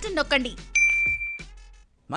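A single bright electronic ding, a promo sound effect, sounds about three-quarters of a second in. It rings steadily for just over half a second, then fades. It follows the last words of a voice.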